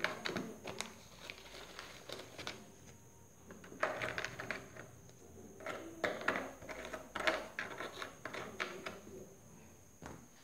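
Graham crackers being snapped into pieces and laid into a plastic container: faint, scattered snaps and taps on the plastic, coming in several short clusters.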